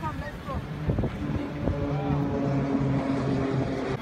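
A vehicle engine idling with a steady low hum, over outdoor street noise and wind on the microphone, with a few brief voices near the start.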